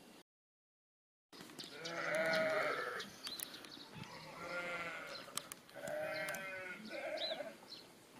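A ewe bleating four times, starting about two seconds in, the first call the longest. She is calling for more guinea pig crunch, as her owner reads it.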